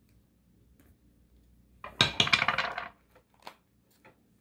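A deck of tarot cards being riffled: a dense run of rapid clicks that starts suddenly about two seconds in and lasts about a second, with a few light taps of handling around it.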